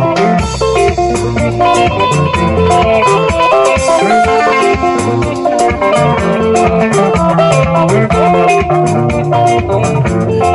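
Music led by plucked guitar, with bass and a steady beat of percussion.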